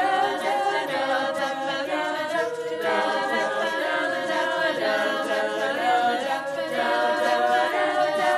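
Teenage girls' a cappella group singing in close harmony, unaccompanied, holding long sustained chords that change every second or so.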